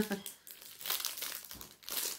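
Plastic packaging crinkling irregularly as it is handled, after the tail end of a laugh.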